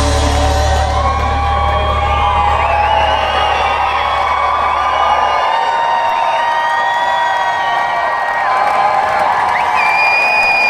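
A hard rock band's final chord ringing out live, its low bass note stopping about five and a half seconds in, while a crowd cheers and whoops.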